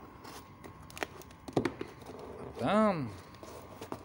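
Knife slitting a plastic courier mailer, with a few sharp clicks and scrapes. About three seconds in comes a short wordless voice sound whose pitch rises and then falls.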